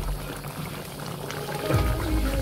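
Chicken stew simmering in a pot, the sauce bubbling and popping softly. Background music comes back in near the end.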